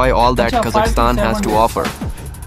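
A narrator speaking over background music with a steady low beat.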